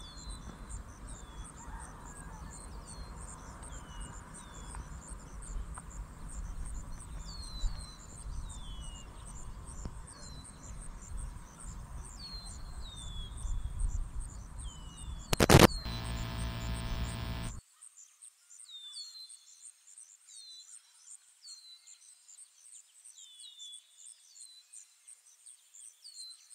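Birds giving short falling chirps again and again, with a steady high insect trill above them, over a low wind rumble. About fifteen seconds in there is a sharp knock and a ringing tone for about two seconds; then the rumble cuts off suddenly and only the chirps and trill go on.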